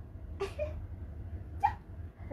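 A toddler's two short, high-pitched vocal sounds, one about half a second in and a louder one near the end.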